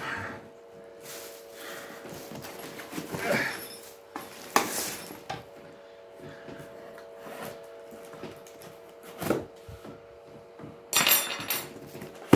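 Scattered clicks, knocks and rustles of gaming-chair parts and their packaging being handled and unpacked, with a sharper knock about four and a half seconds in and a brief rustle near the end. A faint steady hum runs underneath.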